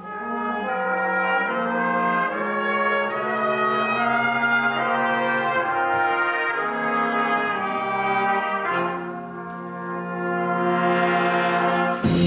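A school jazz band's horn section of trumpets, trombones and saxophones starts together on slow, held chords that change every second or two. The sound dips about nine seconds in and swells again near the end.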